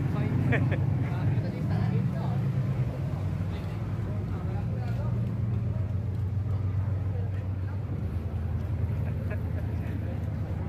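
An engine running steadily at idle, a continuous low drone, with voices in the background.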